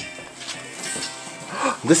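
A singing birthday card's sound chip playing its song, a run of steady held notes.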